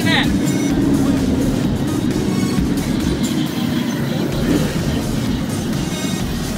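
Vehicle engines running at low speed around a dirt-track race car: a steady low rumble with no sharp revving.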